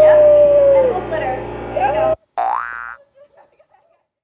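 Drawn-out, wordless vocal exclamations: one long held 'ooh'-like note with gliding pitch, cut off suddenly about two seconds in. A short rising whoop follows.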